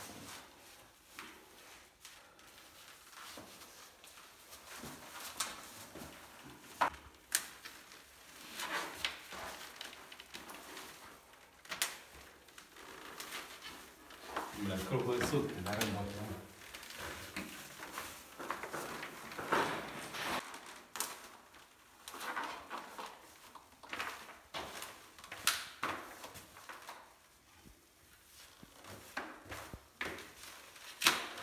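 Heating pipe being bent and fixed to foil-faced foam insulation: scraping and rustling from the pipe and foil, broken by sharp clicks of plastic clips and pipe handling, in a small hard-walled space.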